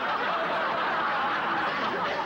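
Studio audience laughing together, a steady wash of many voices after a punchline.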